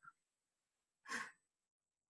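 One short breath, a quick audible puff of air, a little after a second in, surrounded by near silence.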